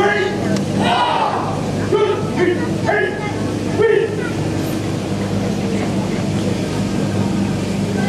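Voices calling out during the first half, over a steady low hum; the hum goes on alone for the rest.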